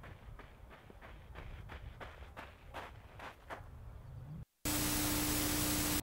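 Running footsteps crunching on gravel, about three soft steps a second over faint outdoor wind. The sound then cuts out for a moment, and a loud steady hiss with a low hum fills the end.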